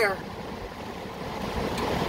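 Heavy rain falling on a car's roof and windshield, heard from inside the cabin as a steady hiss, with a windshield wiper sweeping across the glass near the end.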